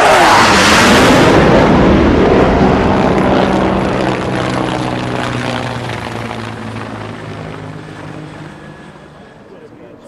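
Sound effect of an aircraft passing: a loud rush peaks in the first seconds as its pitch falls, then a steady engine hum slowly fades away.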